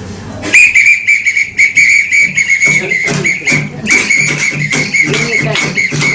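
Violin playing a high, whistle-like note held near one pitch with short breaks, starting about half a second in. From about halfway, acoustic guitar joins with low notes in a steady rhythm.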